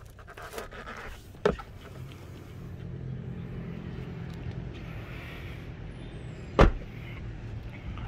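Plastic seat covers crinkling, then a knock about a second and a half in. Near the end comes one loud thud as a Toyota Fortuner's rear door is shut. A low steady hum runs under it.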